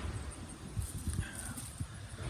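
Footsteps walking on a concrete driveway: irregular low thuds with some phone handling noise.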